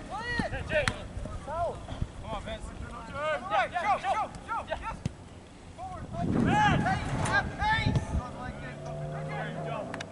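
Distant shouting voices of players and people at the sideline calling out across the soccer field, with no clear words; the calls are loudest and most frequent in the second half.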